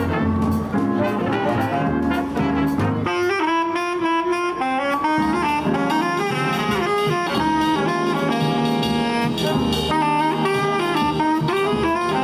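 Jazz big band playing live, with saxophones and brass over a drum kit and bass. About three seconds in, the low parts drop out and the horns carry a brighter melody line, with cymbal strokes on top.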